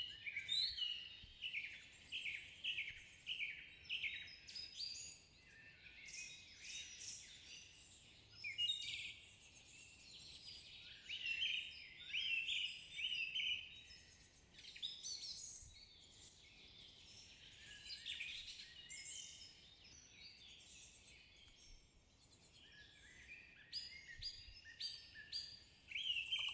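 Faint forest birdsong: several small birds chirping and trilling in quick, high phrases that come in clusters, with a lull of a few seconds late on.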